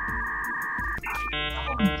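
Electronic 'thinking' sound effect: a held two-note electronic tone for about a second, then a short burst of quick beeping electronic notes, over a low background hum.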